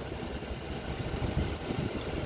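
Low, steady rumble inside a pickup truck's cab, with a few faint low bumps.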